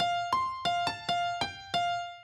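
Synthesised grand piano in FL Studio Mobile playing a short melody from the piano roll: seven single notes in quick succession, a repeated note alternating with higher ones, the last left to ring and fade.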